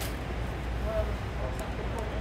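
Steady low rumble inside a passenger car of the Auto Train, with faint voices in the background.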